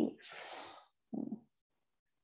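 A breathy exhale into a close microphone, followed by a short, low hum from the same person.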